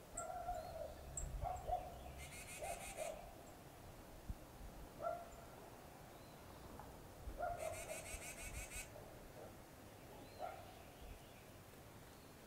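Faint wild birds calling outdoors: short low calls recur every couple of seconds, and two rapid high trills of about a second each come a few seconds apart.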